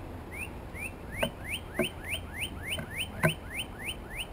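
Northern cardinal singing a long run of rising whistled notes, about four a second, quickening about a second in. A few sharp taps sound on the wooden platform feeder, the loudest about three seconds in.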